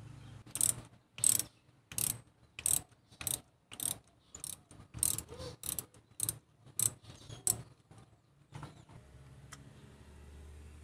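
Ratchet wrench clicking in short strokes while loosening a spark plug: about a dozen quick bursts of clicks, a little over half a second apart, then two fainter ones near the end.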